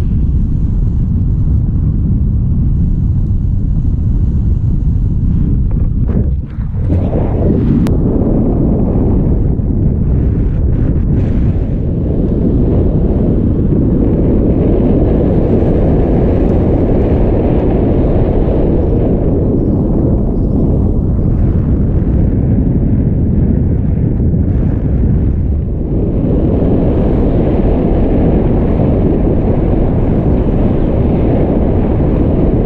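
Wind noise from the airflow of a paraglider in flight buffeting an action camera's microphone: a loud, steady low rumble, with a brief drop about six and a half seconds in.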